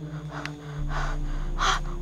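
A person gasping and breathing hard in fright, a few sharp breaths with the strongest near the end.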